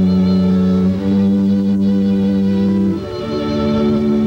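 A live quartet playing a slow, quiet piece of long held chords, moving to a new chord about a second in and again near three seconds.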